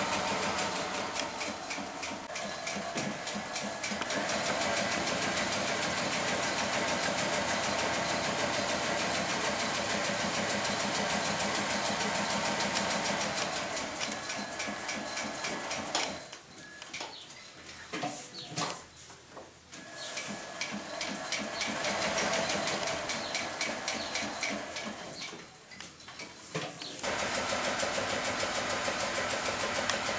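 Artisan 5550 industrial leather sewing machine, fitted with a speed reducer, top-stitching leather boot tops: the motor and needle run in a steady rhythm of stitches. It stops and starts in the second half, with a stretch of short stop-start bursts and then a brief pause before it runs on again.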